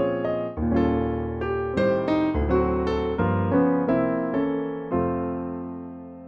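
Roland RP102 digital piano playing its mellow Ballad Piano sample: a slow run of chords and melody notes struck every half second or so, the last chord left ringing and fading near the end.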